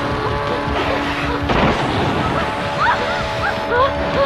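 Film soundtrack: background score with held tones, then a sudden noisy swell about one and a half seconds in, followed by a run of short rising-and-falling high calls near the end.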